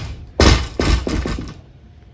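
Barbell loaded with bumper plates set down onto the ground: a heavy thud about half a second in, then a few quickly fading bounces that settle by about a second and a half.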